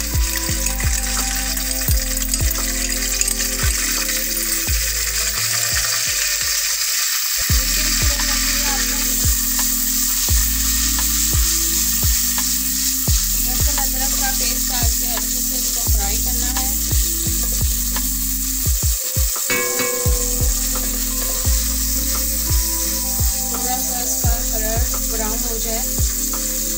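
Ginger-garlic paste frying in hot oil with whole spices in an aluminium pot, sizzling steadily as it is stirred with a spatula. Background music with a beat runs underneath.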